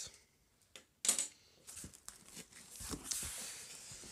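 Cardboard box flaps and the packing inside being handled: a short scrape about a second in, then light rustling, scraping and small taps.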